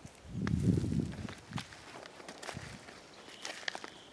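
Footsteps crunching over dry brush and burnt debris, with sharp crackles of twigs scattered throughout. A louder low rumble lasts about a second near the start.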